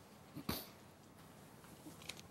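Quiet room tone with one short, sharp sound about half a second in.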